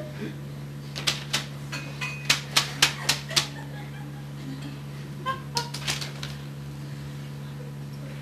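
Steady electrical hum with a run of sharp clicks: about eight in two and a half seconds starting a second in, then a few fainter ones around the middle.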